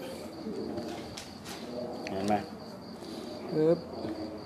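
A steady high-pitched insect drone runs throughout, with a couple of faint clicks a little over a second in. A man's voice speaks short Thai words near the middle and again near the end, ending on a sharp "ep".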